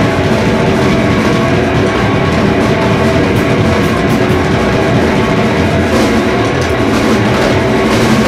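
Rock band playing live, loud and dense without a break: electric guitar and drums in a sustained, full-on passage.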